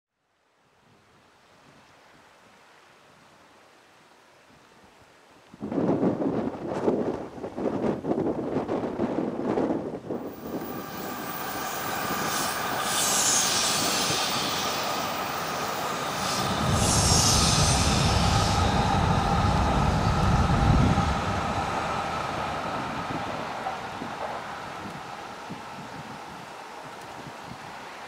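Hokuriku Shinkansen high-speed train passing on an elevated line: a steady rushing sound with a whine, rising suddenly about five seconds in, loudest with a deep rumble around seventeen to twenty-one seconds, then easing away.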